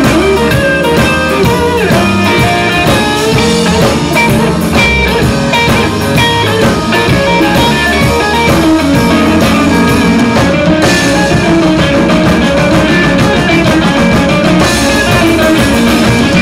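Live blues band playing loudly and steadily: electric guitar, bass guitar and keyboard over drums, an instrumental stretch with no singing.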